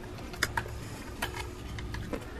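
A few light, separate clicks and ticks of a plastic wiring clip and its surroundings handled by gloved hands in an engine bay, over a low steady hum.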